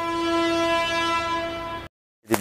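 A long, steady horn-like tone at one unchanging pitch, held for about two seconds and cut off abruptly near the end.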